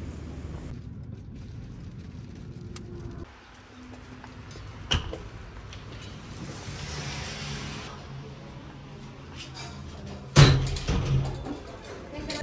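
A heavy glass entrance door being pushed open, with a sharp thud and a couple of knocks near the end. Before that, a low rumble of wind on the microphone outdoors.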